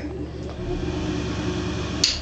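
Bathroom ceiling heat-lamp unit's exhaust fan running with a steady hum.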